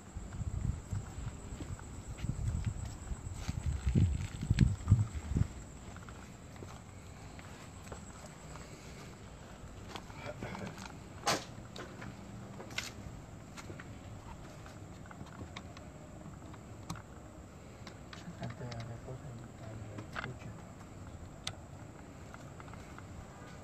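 Quiet night-time outdoor background. For the first five seconds or so there are low, uneven rumbles of handling or wind on the microphone, then a faint steady background with a few sharp clicks and a thin, steady high insect-like hum.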